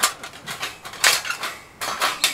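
Thin steel plates of a folding fire stand clanking and rattling as they are unfolded and fitted onto the wire frame. There is a sharp clank at the start, a cluster of clatters about a second in, and another near the end.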